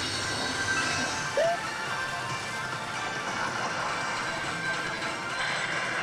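Electronic music and sound effects from pachislot machines over the steady din of a pachislot hall, with one short rising tone about a second and a half in.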